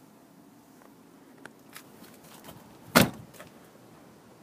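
A Dodge Caravan's front door being shut: a few small clicks and rattles, then one loud bang of the door closing about three seconds in.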